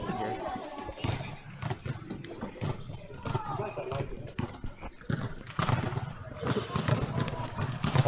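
Rustling and light clicks of a clip-on microphone being handled as it is fitted behind the ear, with faint voices under it.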